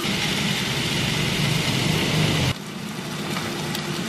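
Steady cooking noise: chicken frying in a pan on a gas burner, with the fan of a Philips air fryer running. About two and a half seconds in, it drops suddenly to a quieter steady hum.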